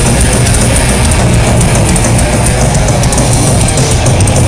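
Heavy metal band playing live: distorted electric guitar over drums with rapid cymbal hits, loud and continuous.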